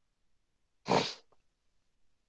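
A single short, sharp burst of breath and voice from a man about a second in, close on a headset microphone, otherwise near silence.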